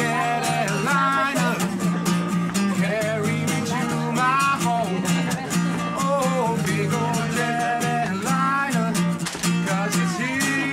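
Acoustic guitar strummed steadily while a man sings long, wavering notes over it.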